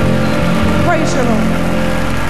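Live gospel band holding sustained chords to close a song, with a short vocal phrase from the singer about a second in.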